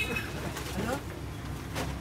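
A pigeon cooing once, a short rising call, over a steady low rumble.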